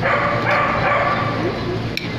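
A high-pitched voice held in one long drawn-out sound of about a second and a half, dropping in pitch at the end.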